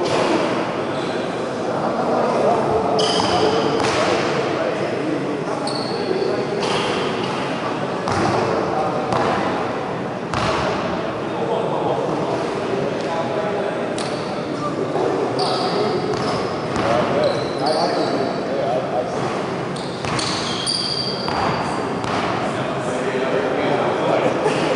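Echoing gymnasium ambience: indistinct voices of players talking across the hall, with occasional thuds of basketballs bouncing on the hardwood court.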